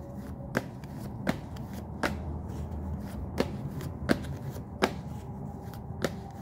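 A tarot deck being shuffled by hand, with a sharp card snap about every 0.7 seconds.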